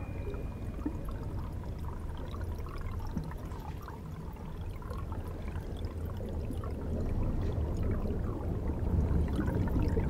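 Aquarium water bubbling and gurgling over a low rumble that grows louder over the last few seconds.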